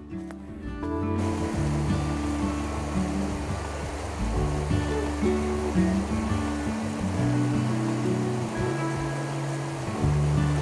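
Background music over the steady rush of a creek's fast water running over rocks, the water coming in about a second in.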